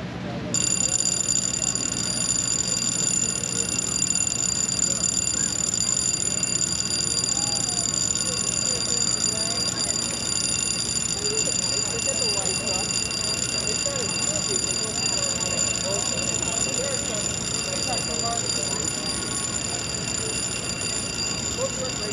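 Steady, high-pitched whine of a navigation lock's gate machinery while the steel miter gates swing open, holding several pitches at once, over a faint murmur of distant voices.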